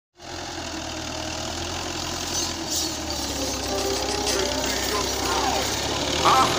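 Fiat New Holland 640 tractor's diesel engine running steadily under load as it pulls a disc harrow through tilled soil. A voice is briefly heard near the end.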